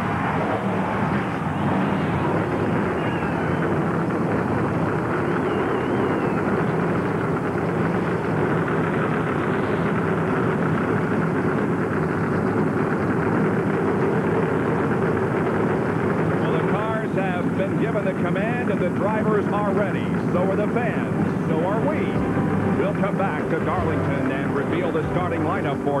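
A field of NASCAR Winston Cup stock cars' V8 engines fired up and running together on the starting grid, a loud, dense, steady rumble.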